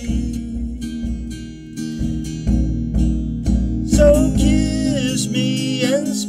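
Acoustic guitar strummed in a steady rhythm. A man's singing voice comes in about four seconds in.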